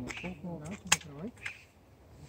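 Low men's voices talking, with a single sharp crack about a second in.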